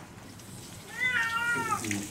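Domestic cat giving one drawn-out meow about a second in, its pitch rising at the start, holding, then falling away.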